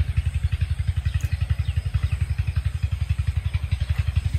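An engine running steadily, heard as a low, even beat of about nine pulses a second.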